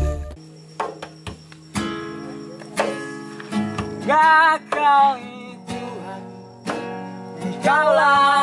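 Acoustic guitar strummed in single, spaced chords, with a man singing short phrases over it around the middle and again near the end.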